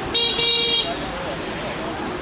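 A vehicle horn honking twice in the first second, a short toot and then a longer one, high-pitched, over steady city traffic noise.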